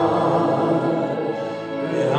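A small group of voices singing a Messianic worship song together with keyboard accompaniment, holding sustained notes.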